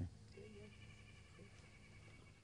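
A brief click at the very start, then near silence with a faint animal call in the background.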